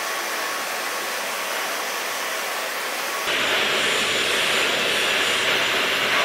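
High-speed hair dryers blowing at high airflow, a steady rushing whoosh. About three seconds in, the sound switches to a second dryer that is louder and hissier.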